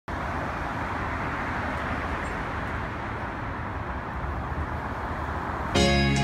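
Steady road traffic noise, an even hiss with no distinct events. Music starts suddenly just before the end.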